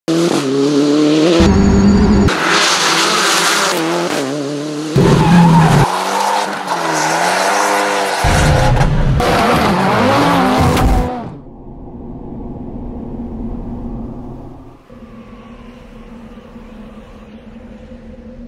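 A car being driven hard, engine revving with long wavering tyre squeals, for about the first eleven seconds. It then drops sharply to a much quieter steady hum.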